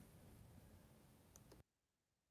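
Near silence: faint room tone with a single soft click, then the sound cuts off about a second and a half in.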